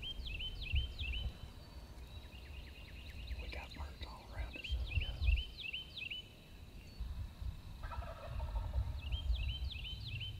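Wild turkey gobbling three times, near the start, about five seconds in and near the end, each gobble a quick rattling run of notes. A low rumble runs underneath.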